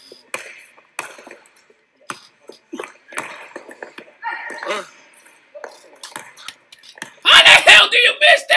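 Faint, scattered thuds of a basketball on an indoor court floor with faint voices, then a man's loud exclaiming voice about seven seconds in.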